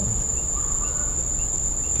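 A steady high-pitched tone, unbroken and even, over a low background hum.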